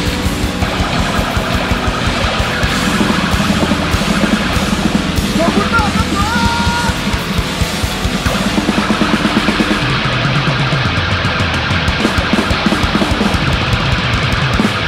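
Live heavy rock band playing loud, with distorted electric guitars and fast, driving drums.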